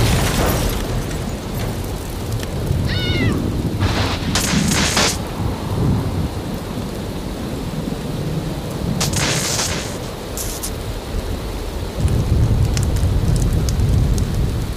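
Heavy rain falling with a continuous low thunder rumble that swells near the end. There are brief bright crashes about four and nine seconds in, and a short rising call about three seconds in.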